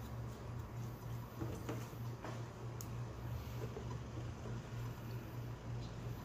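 Hairdressing scissors snipping a few faint clicks as they trim the corners off a bob cut on a mannequin's hair, over a steady low hum.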